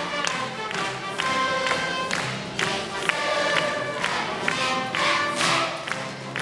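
Large massed choir of children and teenagers singing together in a brisk, rhythmic song, the sung syllables falling on an even beat about twice a second.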